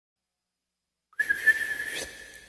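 A single high, steady whistle-like note with a breathy hiss, starting suddenly about a second in: the opening note of the song's intro.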